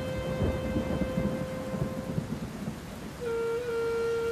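Background music with a single held high note that fades out about two and a half seconds in, the melody returning near the end, over a rumble of thunder and falling rain.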